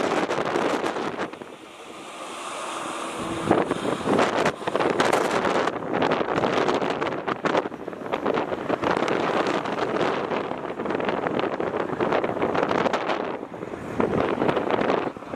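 Wind buffeting the microphone in uneven gusts, with a short lull about two seconds in.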